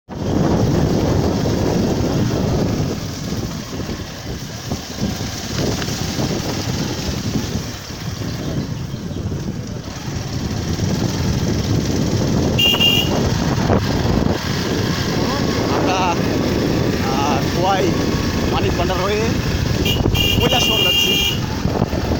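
Motorcycle on the move, its engine running under heavy wind noise on the phone microphone. A high steady beeping tone sounds briefly about 13 s in and again for about a second near the end, and voices come in during the second half.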